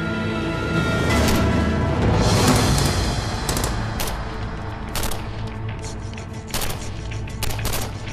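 Tense dramatic film score that swells about a second in, then a gunfight over it: about ten sharp gunshots at uneven spacing, several in quick pairs, starting about three and a half seconds in.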